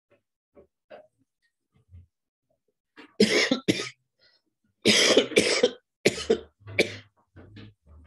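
A man coughing into his fist, a fit of about eight short, hard coughs in bunches, starting about three seconds in and tailing off toward the end; he is a little sick.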